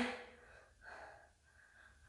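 A woman's faint breaths while exercising, after the last syllable of a word dies away; otherwise a quiet room.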